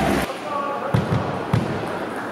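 A celluloid-type table tennis ball bounced twice, two short knocks a little over half a second apart, with voices in the hall.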